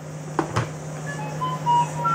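CNC router stepper motors whining in a run of short steady tones that jump from pitch to pitch as the axes begin traversing under a warm-up program, over a steady low hum. A single click comes about half a second in.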